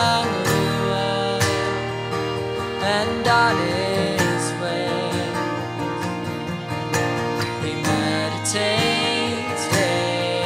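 Instrumental passage: a violin plays a gliding melody over a strummed acoustic guitar.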